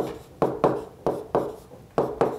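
Pen strokes on an interactive whiteboard screen as a word is handwritten: about six quick taps and short scrapes, roughly three a second.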